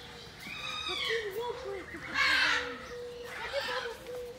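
Harsh animal calls: a pitched, arching call about half a second in, then a loud, rasping squawk a little past the middle and a shorter one near the end.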